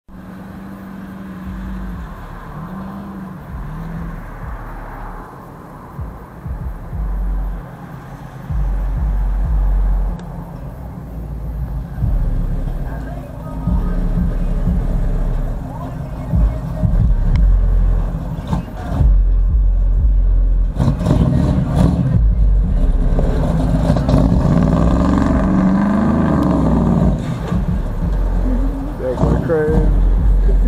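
Big-block V8 of a 1973 Chevrolet donk running as the car drives up and pulls in, growing louder as it nears. The engine revs up and falls back again about three-quarters of the way through.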